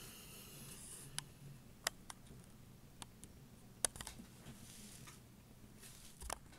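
Faint room tone with a handful of short, light clicks and taps, clustered between about one and four seconds in: small tools and plastic model parts being handled on a wooden desk.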